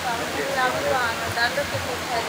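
Soft, indistinct voices over a steady hiss of background noise.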